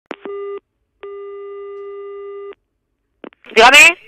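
Telephone ringing tone heard down the line: a short steady beep, then one steady tone of about a second and a half, typical of the Spanish 425 Hz ringback cadence, as the call is placed. Near the end, a brief loud burst of voice.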